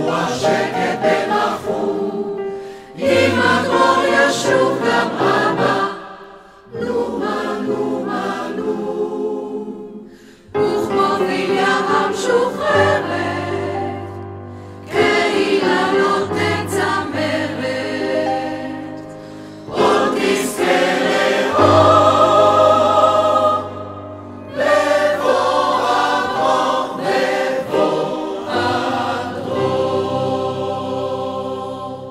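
A mixed choir of men's and women's voices singing, phrase after phrase, with brief breaks between phrases every four to five seconds.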